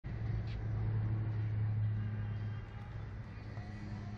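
A low, steady motor hum over outdoor background noise, dropping in level about two and a half seconds in.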